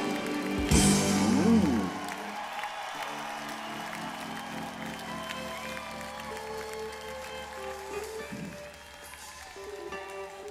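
A live rock band's song ends on strummed guitar about two seconds in. Then the audience applauds and cheers while scattered, quiet instrument notes sound between songs.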